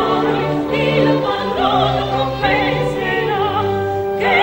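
Two women's voices singing an opera duet with a wide vibrato, over a chamber orchestra playing a bass line in held notes. The singing breaks off briefly near the end.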